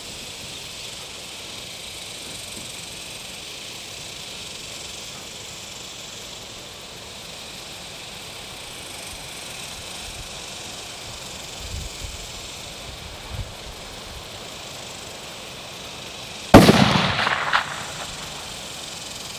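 A single shot from a 6.5 Creedmoor precision rifle built on a Howa 1500 barreled action with a bull barrel, fired about a second and a half before the end. It is a sharp, loud crack that tails off over about a second, heard over a steady background hiss.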